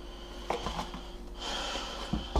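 Water being poured out of a plastic mushroom tray into a sink, with a sharp click from handling the tray about half a second in and a louder hissing splash near the end.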